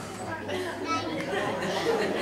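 Guests seated at tables chatting among themselves: a hubbub of overlapping, indistinct voices.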